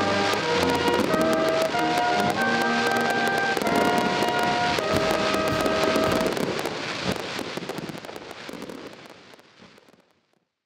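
Brass band music in slow held chords, mixed with the crackling and popping of fireworks; everything fades out over the last few seconds.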